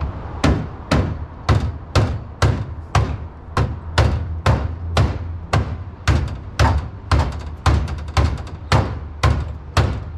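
Hammer blows on the car body's sheet metal at the trimmed door opening, about two evenly spaced strikes a second, beating the cut edge down so there is no sharp edge or corner.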